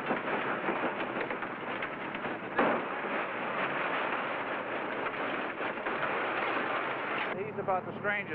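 Scrap metal clattering and rattling in a dense, continuous din, with a louder crash about two and a half seconds in. It stops shortly before the end, where a man starts speaking.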